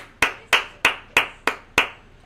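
A person clapping hands in a quick, even run: six sharp claps, about three a second.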